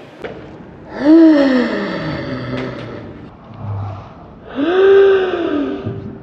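A young woman's voice letting out two long, drawn-out excited cries with no words. The first comes about a second in, jumps up and then slides down in pitch. The second comes near the end and arches up and back down.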